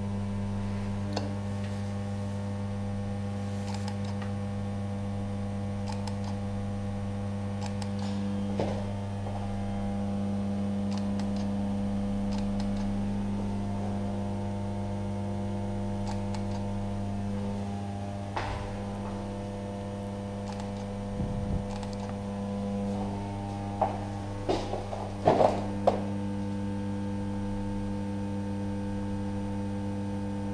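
Steady low electrical mains hum from powered plant equipment and lighting, with several fainter steady higher tones above it. A few light clicks and knocks break in, most of them near the end.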